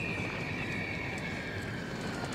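A high-pitched whine falling slowly and steadily in pitch, over a low, even background rumble.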